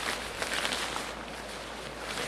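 Silnylon fabric rustling as it is handled and turned over, with a few soft crinkles in the first second.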